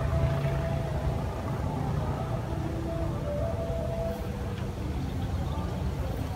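A steady low engine rumble runs throughout, with faint distant voices.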